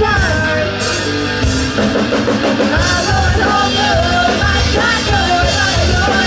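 Live rock band playing: female voices singing over electric guitar and a drum kit.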